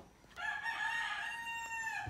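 A rooster crowing: one long call, held about a second and a half, starting about half a second in.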